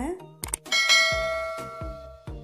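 A short click, then a bright bell chime that rings out and fades over about a second: the sound effect of an on-screen subscribe-and-bell button animation, over soft background music.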